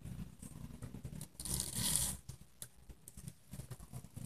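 Satin ribbon being pulled through the weave of vagonite fabric and the cloth being handled: soft rustling and scraping, with one longer swishing pull about one and a half seconds in.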